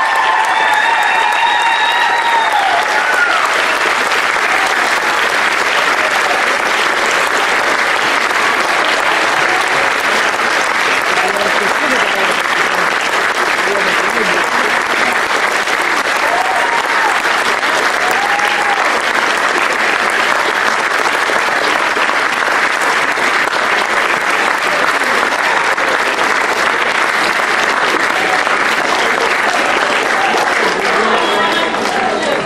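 Large audience applauding steadily and at length, a dense even clatter of many hands clapping. A sung or played note trails off in the first few seconds, and a few voices call out briefly about halfway through.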